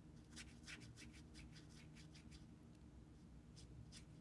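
Faint strokes of a watercolour brush on paper: a handful of soft, quick brushing sounds in the first second and a half and another near the end, over a low steady room hum.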